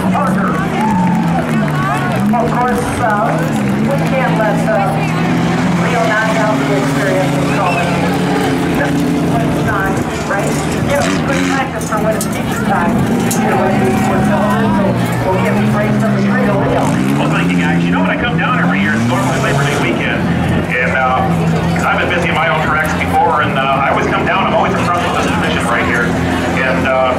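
Engines of several small stock race cars running on a dirt track, their pitch rising and falling again and again as the cars throttle up and slow down, with people talking over them.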